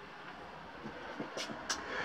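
Quiet pause: faint steady background noise with two soft clicks about a second and a half in.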